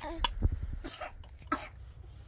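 A baby coughing, three short coughs in quick succession.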